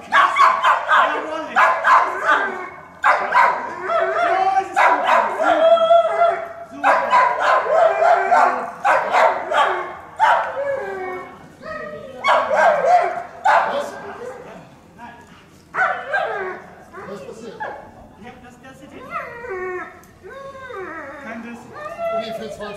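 Police service dog barking loudly in repeated bursts while holding a suspect at bay, with people's voices mixed in. The barking fades over the last several seconds, leaving quieter voices.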